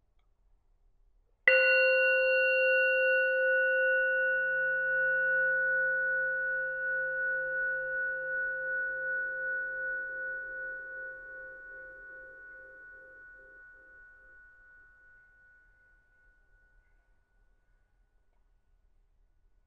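A meditation bell struck once, ringing out with a clear, many-toned sound that fades slowly over about fourteen seconds, wavering gently as it dies away. It is the signal that the meditation is over.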